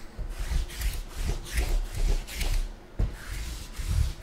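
Hands rubbing and scraping something on the tabletop in a run of short scratchy strokes, about two to three a second, with soft thuds under them and a brief pause about three seconds in.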